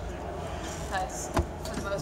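Steady background murmur of a crowded exhibition hall with faint distant voices, and a single sharp click about one and a half seconds in.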